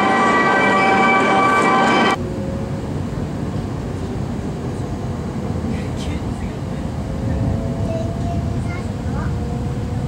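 A steady multi-tone electronic signal rings on the Shinkansen platform and cuts off abruptly about two seconds in. It gives way to the low, even running rumble of an E5-series Hayabusa Shinkansen heard from inside the passenger cabin, with a faint steady whine above it.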